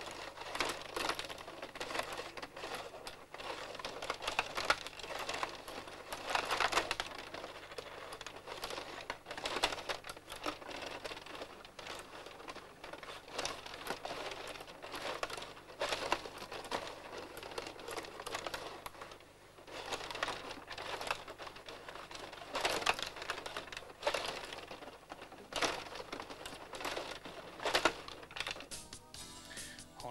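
Rapid, irregular clicking and clattering of a Pola 500 table hockey game in play: steel rods pushed and twisted, plastic players and the puck knocking against one another and the boards.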